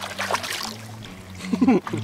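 Water splashing as a musky is let go from a hand at the boat's side and swims off, over background music with a steady low bass line; a voice exclaims near the end.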